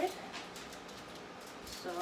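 Faint scraping and clicking of metal tongs against a foil-lined baking sheet as cooked bacon-wrapped jalapeños are lifted off, between a woman's words.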